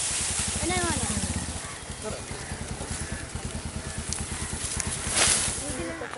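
Outdoor background noise: a steady hiss with a low, rapid throbbing underneath. A person's voice is heard briefly about a second in, and a louder rush of noise comes near the end.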